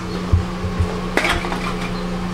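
A few soft thumps, then one sharp clink of an empty aluminum drink can about a second in, over a steady low hum.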